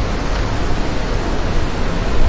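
Steady, even hiss of background noise with no distinct sound standing out.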